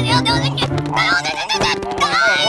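A low honking vocal sound from a cartoon owl character, held for about a second and a half, over background music.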